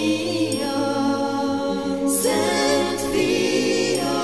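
Music: a Hungarian Christmas song, sung voices holding long notes with vibrato over a steady accompaniment, with a new sung phrase starting about halfway through.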